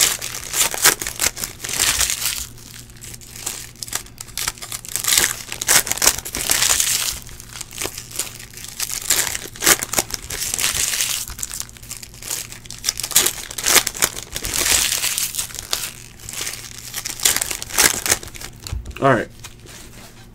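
Foil trading-card pack wrappers being torn open and crumpled by hand, crackling in irregular bursts.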